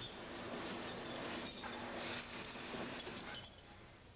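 Tire chains faintly clinking and jangling as they are draped and worked over a truck tire by hand, cutting off about three and a half seconds in.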